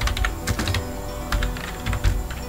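Typing on a computer keyboard: a series of separate keystrokes at an uneven pace, with music playing underneath.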